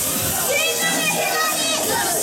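A young girl's high-pitched voice calling out excitedly through a microphone and PA, with pop backing music continuing underneath.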